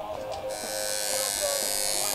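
Electric tattoo machine switched on about half a second in, then buzzing steadily.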